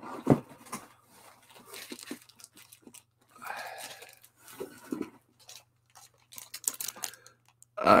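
Packing being handled in a cardboard shipping box as a graded comic slab in a plastic sleeve is lifted out: irregular rustling, crinkling and scattered knocks, the sharpest knock just after the start.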